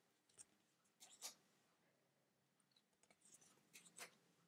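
Faint, brief scrapes of cardstock oracle cards sliding over one another as a deck is leafed through by hand: one soft rustle about a second in and a few more near the end.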